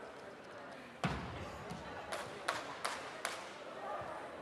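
A heavy thud about a second in, then four sharp smacks about a third of a second apart, from a Brazilian jiu-jitsu match on foam mats. Voices echo through a large hall underneath.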